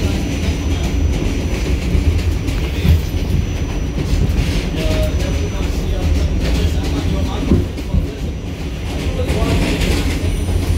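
New York City Subway R46 car in motion, heard from inside the car: a loud, steady rumble of the wheels on the track.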